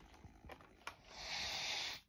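A steady hiss, starting about a second in and cutting off abruptly about a second later, preceded by a couple of faint clicks.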